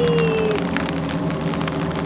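A voice's drawn-out call trails off in the first half second. Under it and after it, the charter fishing boat's engines idle with a steady low hum over a hiss.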